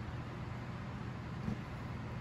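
Steady low background hum of room machinery, with a faint soft knock about one and a half seconds in.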